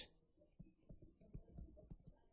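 A string of faint, irregular clicks and taps from a pen stylus on a writing tablet as words are handwritten.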